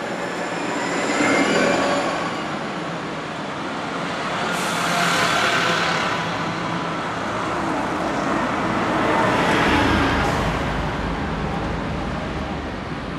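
Double-deck buses and a double-deck coach driving past close by on a street, the engine and tyre noise swelling as each one passes, with a sudden hiss about four and a half seconds in.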